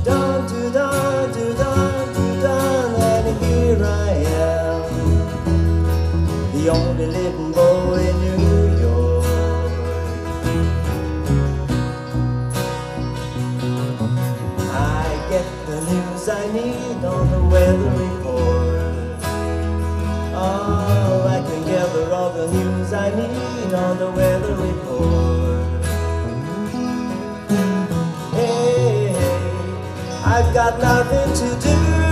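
A live band playing: a man singing over strummed acoustic guitar, electric guitars, bass and a drum kit.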